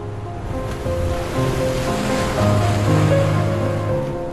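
Slow relaxation music with held tones, layered with the wash of an ocean wave that swells in about half a second in, is loudest past the middle and recedes near the end.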